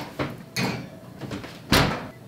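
Kitchen oven door being shut with a single loud thump near the end, after lighter knocks and rustling as the cake pan goes in.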